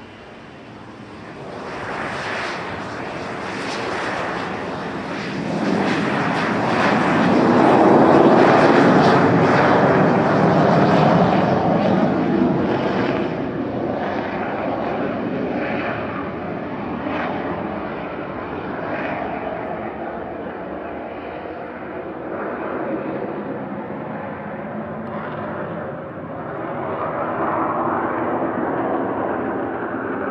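The twin General Electric CJ610 turbojets of a Messerschmitt Me 262 replica at takeoff power, a steady jet roar with a faint whine in it. It builds over the first few seconds as the jet rolls past, is loudest about eight seconds in, then slowly fades as the aircraft climbs away.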